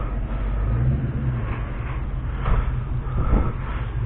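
A motor vehicle engine running, a steady low rumble.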